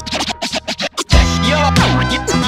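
Hip-hop track intro with DJ turntable scratching: a quick run of short scratch cuts, then the full beat with heavy bass drops in about a second in, with more swept scratches over it.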